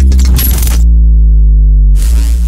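Loud intro music for a podcast: a deep, sustained synth bass note whose pitch sinks slowly. Over it, a bright, fast rattling that cuts off suddenly about a second in.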